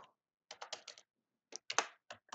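Computer keyboard being typed on: a quick run of about five keystrokes from half a second in, then a few more near the end.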